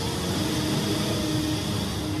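Steady rushing wind of a dust-storm sound effect, with a faint held tone underneath.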